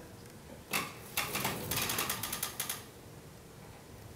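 Two office chairs on casters pushed apart and rolling across a hard floor: a short burst as they push off, then the wheels clatter rapidly for about a second and a half before dying away.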